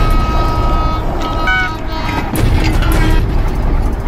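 A train running along the railway track, with music over it.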